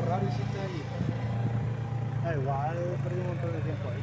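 A Honda CB500F's parallel-twin engine runs steadily at low revs as the motorcycle is ridden slowly. Voices talk over it near the start and again in the middle.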